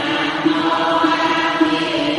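Buddhist devotional chant: voices in unison over backing music, repeating a short phrase at an even pulse. It begins abruptly after a brief silence, as a looped track restarting.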